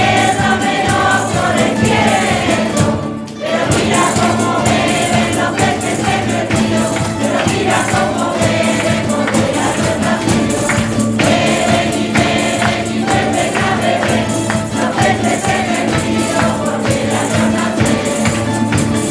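A mixed folk choir singing a Christmas carol (villancico) in chorus, accompanied by strummed Spanish lutes and guitars with light percussion. The singing breaks briefly about three seconds in, then carries on.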